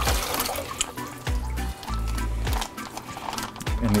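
Water pouring and splashing out of a plastic coral shipping bag for about the first second, then plastic bag crinkling and clicking. Background music with a steady bass line plays under it.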